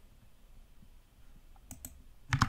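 Faint room tone, then two quick clicks close together near the end, from the computer keyboard or mouse being worked at the desk.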